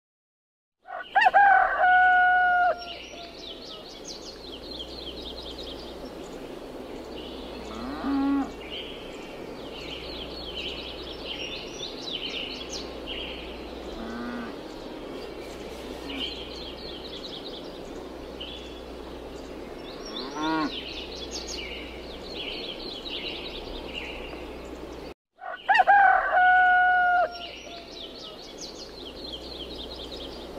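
Farmyard sound effects: a rooster crows loudly about a second in, cattle moo a few times, and small birds chirp throughout. The track loops, starting over with the same crow after a brief break of silence near the end.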